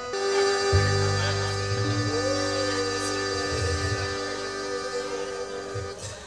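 A live band playing slow held chords, with deep bass notes coming in under them about a second in; the chords fade out near the end.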